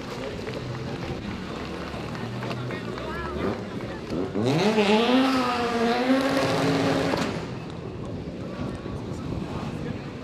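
Car engine idling low, then about four and a half seconds in revving up and holding a raised pitch for about three seconds before dropping back.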